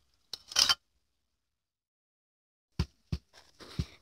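Crispy batter-fried oyster mushrooms rustling and scraping briefly in a wire-mesh strainer, followed a couple of seconds later by a few light knocks and taps.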